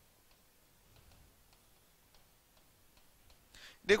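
Chalk tapping and scratching on a chalkboard while writing, heard as a run of faint, irregular ticks. A spoken word comes near the end.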